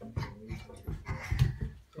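A toddler's feet thumping on carpeted stairs as he steps down, several soft thuds, with small wordless vocal noises from the child.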